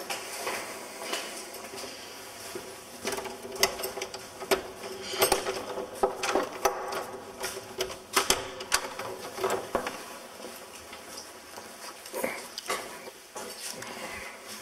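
A key being worked in a door lock: irregular metallic clicks, rattles and knocks as the door is unlocked.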